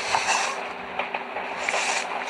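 Inside a moving passenger railway carriage: a steady rumble and hum of the running train, with a few light clicks.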